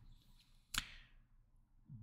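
Near silence with one short, sharp click about three-quarters of a second in.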